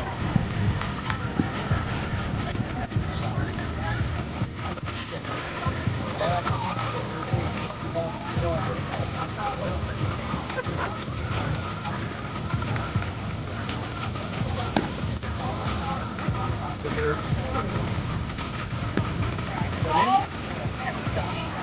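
Outdoor ballfield background: indistinct voices and background music over a steady faint high tone, with one sharp click about 15 seconds in.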